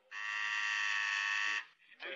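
Electric doorbell buzzer ringing once: a single steady buzz about a second and a half long that cuts off sharply.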